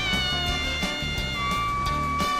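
A woman screaming long, held screams over background music with a steady beat. One scream bends up in pitch at the start and fades, and another held scream starts about one and a half seconds in.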